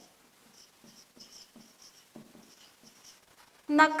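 Marker pen writing on a whiteboard: faint, short scratchy strokes in quick succession as letters are written.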